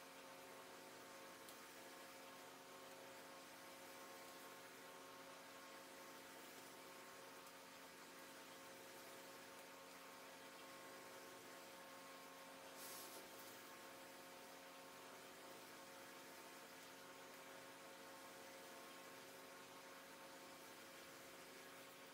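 Near silence: room tone with a faint steady electrical hum and hiss. One brief faint click about halfway through.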